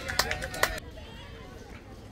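A few sharp, irregular clicks in the first second, then a quieter outdoor background with faint distant voices across a baseball field.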